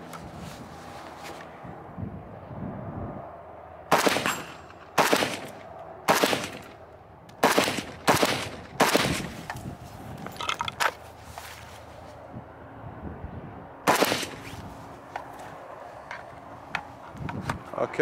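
Zastava M90 AK rifle in .223 firing about seven single semi-automatic shots, most roughly a second apart with a longer pause before the last, each followed by a short echo. The rifle cycles cleanly from the WBP Poland magazine.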